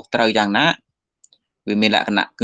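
A man speaking Khmer, pausing for about a second in the middle, with two faint clicks during the pause.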